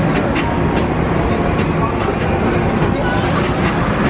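Busy city street noise: steady traffic with voices of passers-by.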